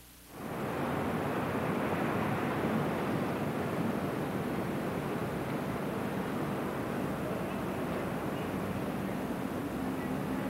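Steady rushing city ambience, like distant traffic and wind over a city at night, fading in quickly about a third of a second in and holding level throughout.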